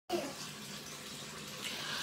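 Bathtub tap running, a steady hiss of water filling the bath.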